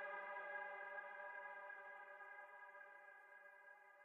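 Closing sustained electronic chord of an EDM track, held steady with no beat and fading out gradually.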